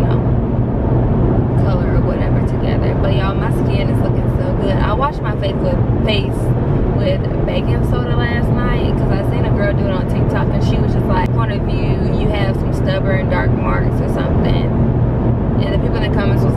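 A woman talking inside a moving car, over a steady low drone of road and engine noise in the cabin.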